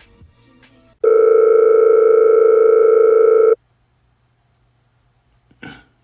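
Telephone ring tone: one steady electronic ring about two and a half seconds long, starting about a second in.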